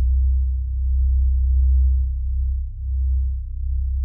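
Deep, low sustained drone in the film's opening title music, left ringing after a struck gong-like tone has faded. It holds steady with a slight swell and a brief dip near the end.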